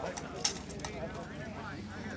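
Sharp knocks of rattan weapons striking in armoured combat, the loudest about half a second in and another a little before the middle, over faint background voices.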